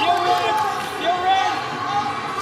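Speech: a man's voice talking, with no other sound standing out.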